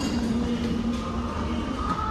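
Steady low rumble with a rustle of clothing, the phone handled close against garments as they are pulled through a bin.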